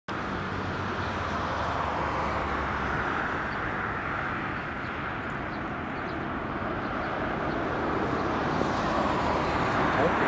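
Bombardier Dash 8 Q400 turboprop on final approach, its two Pratt & Whitney PW150 engines and propellers making a steady drone that grows louder near the end as the aircraft comes closer.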